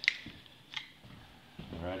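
Two short, sharp clicks about three-quarters of a second apart, the first much the louder, then a man starts to speak near the end.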